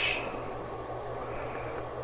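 Homemade bench power supply's cooling fan running, a steady low hum and whirr.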